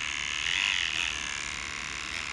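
Electric hair trimmer running steadily as it edges a hairline for a line-up, a little louder about half a second in.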